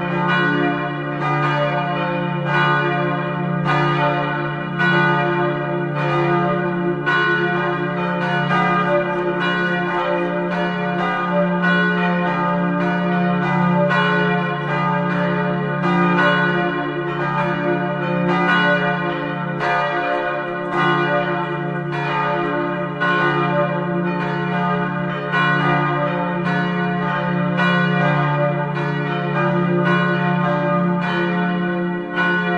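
Church bells ringing together, a steady run of overlapping strikes about two or three a second, calling to the Sunday service.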